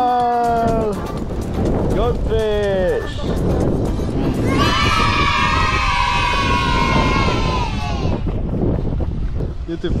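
Wind buffeting the microphone with a steady rumble beneath, and over it a voice singing long drawn-out notes that slowly fall in pitch: once during the first second, briefly around two to three seconds in, and again from about five to eight seconds in.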